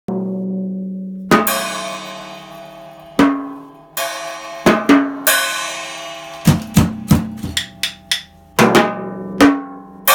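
A child playing a small drum kit: scattered drum hits in an uneven rhythm, with several crash cymbal strikes left ringing out. The toms ring with a short, low, pitched tone after each stroke.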